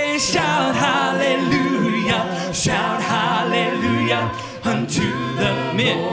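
A praise team of several male and female voices singing a gospel worship song a cappella in harmony, with no instruments.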